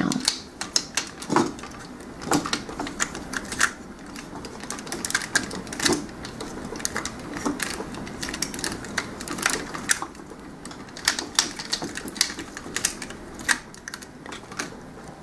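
Parts of a Transformers Masterpiece Optimus Prime toy clicking and rattling as they are flipped and pushed into place by hand, many small irregular clicks.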